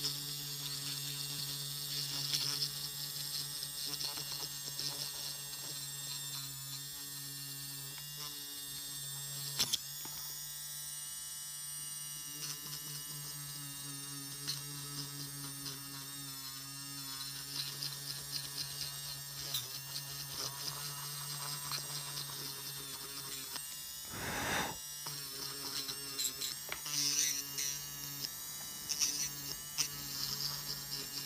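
Electric nail drill running with a 3/32" carbide cuticle-clean safety bit, a steady motor hum with a higher grinding sound that comes and goes as the bit works the nail at the cuticle. A brief rush of noise breaks in near the end.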